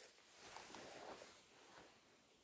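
Near silence, with a faint soft noise from about half a second to just over a second in.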